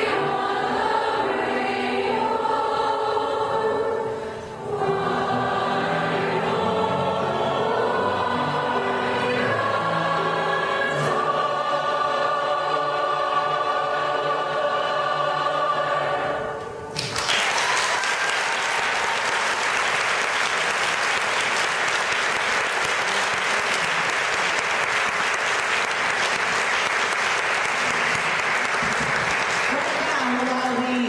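A large mixed choir of men's and women's voices singing, the song ending a little past halfway through. An audience then applauds steadily for the rest.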